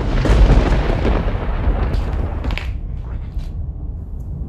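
A picture-book page being turned by hand: a loud paper rustle with a low thump at the start, fading over about two seconds, then a couple of lighter rustles.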